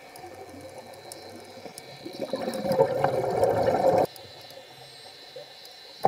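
A scuba diver's exhaled bubbles rush out of the regulator underwater in a gurgling burst about two seconds long, heard through the camera housing, and cut off sharply. A faint steady high tone runs underneath.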